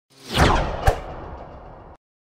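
An animation whoosh sound effect: a rush of noise swells and falls in pitch within the first half second, a sharp hit lands a little before a second in, and the sound then fades away.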